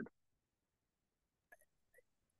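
Near silence between two speakers, with a faint short click about one and a half seconds in and another at the very end.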